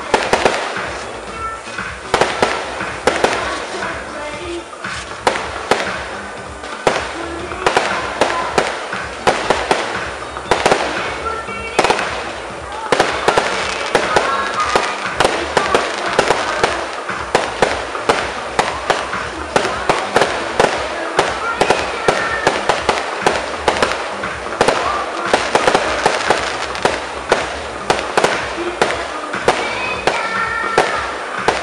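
Fireworks going off in quick succession: a continuous run of sharp bangs and crackles, several a second.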